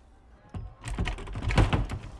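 A locked door being rattled and shaken from inside: a quick run of clattering knocks and thumps starting about half a second in.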